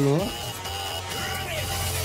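Live music from a small stage band with violin, electric guitar and hand drums, with a voice over it.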